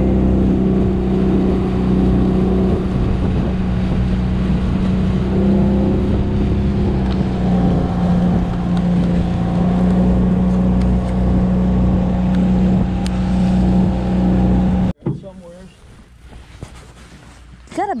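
Outboard motor pushing a small aluminium fishing boat along at a steady speed, with the rush of the wake and wind; the motor sound cuts off abruptly about fifteen seconds in.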